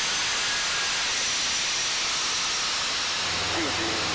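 Steady rushing cockpit noise of a small aircraft in flight, a loud even hiss with a faint high whine over it. A low hum joins a little after three seconds in, just before a short word.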